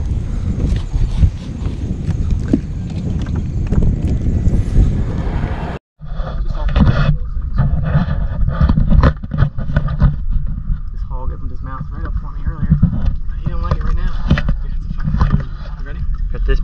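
Wind and handling rumble on a body-worn camera microphone, with indistinct voices. The sound drops out and changes abruptly at a cut about six seconds in.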